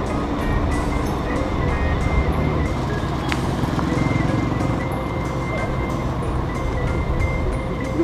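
Background music with a short melody line that steps up and down over a heavy low bass.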